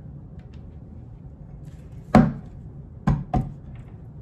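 Three short, sharp knocks on a hard surface: one loud knock about halfway through, then two more in quick succession about a second later.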